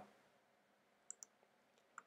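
Near silence: room tone with a few faint, short clicks, a quick pair about a second in and one more at the very end.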